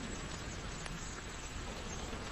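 A paper label being peeled off a clear glass bottle, its adhesive giving a steady, faint, buzzy crackle as it lets go.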